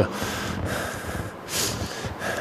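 A person breathing out close to a microphone, a short breath about one and a half seconds in, over a steady low hiss of room noise.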